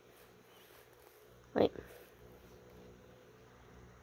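Near silence: quiet room tone with a faint steady hum, broken by one short spoken word about a second and a half in.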